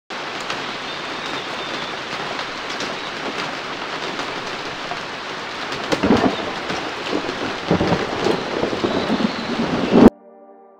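Steady rain with rolls of thunder, the first about six seconds in and a longer one near eight seconds, cutting off suddenly at the end.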